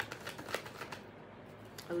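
A tarot deck shuffled by hand: a few light card clicks and slaps in the first second, then quieter shuffling.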